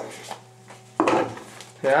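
A small cardboard earphone box being handled and opened, with faint rustling and then one sharp click about a second in as the box is opened.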